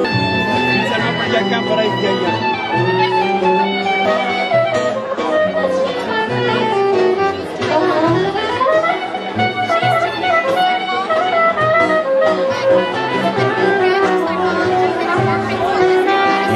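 Live saxophone and acoustic guitar playing a Ladino song: the saxophone carries a wavering, gliding melody over strummed guitar.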